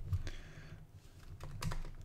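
Keystrokes on a computer keyboard: a few clicks at the start, a quiet stretch, then a quick run of keystrokes near the end as a word is typed.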